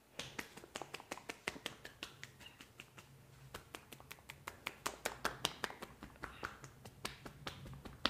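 Quick clapping clicks of palms held together striking the top of the head in an Indian head massage: praying-hands percussion, about four to six strikes a second, starting abruptly and coming faster in the second half.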